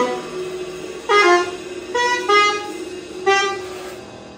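Soprano saxophone playing four short, separate notes in free improvisation, over a steady held tone that stops near the end.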